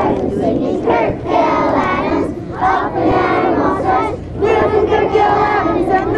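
A large group of children chanting together in unison, loud, in short phrases of about a second with brief breaks between them.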